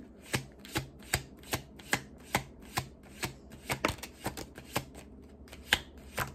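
A deck of tarot cards being shuffled by hand, packets of cards slapping down onto the deck in a run of crisp taps about two or three a second, steady at first and less even in the second half.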